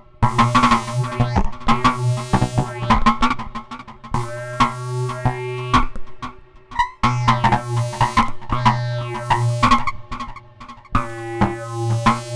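Sequenced modular-synth patch: an Uhlectronic telephone synthesizer driven by RYK 185 step sequencers, playing a fast run of short pitched notes and clicks over a steady low drone, with short breaks in the pattern. The sound runs through a Roland SPH-323 phase shifter, Metasonix S-1000 Wretch Machine, Peavey delay and reverb.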